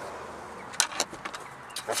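A few short, sharp plastic clicks and knocks, about four in a second, from handling the loosened plastic switch panel and door trim of a Chevy pickup with a flathead screwdriver.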